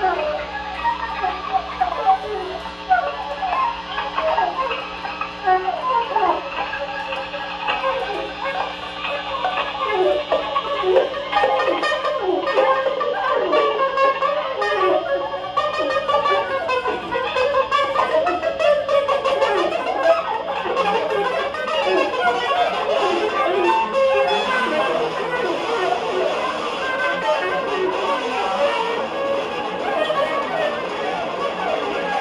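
Live instrumental music: a small end-blown flute plays a quick, ornamented melody over electric guitar.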